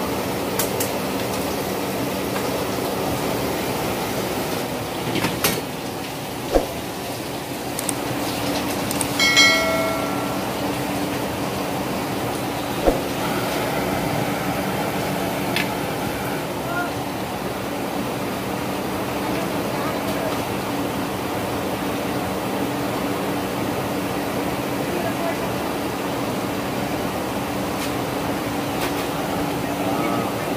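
Steady roar of a large commercial gas stove burner with a low hum, under a pan of braise cooking. A few sharp metal clinks are heard, and a brief ringing metallic tone comes about nine seconds in.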